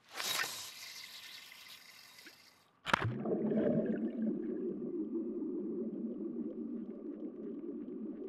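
A sudden hissing rush of water that fades over about three seconds. After a sharp click it cuts abruptly to a steady, muffled underwater churning of bubbles.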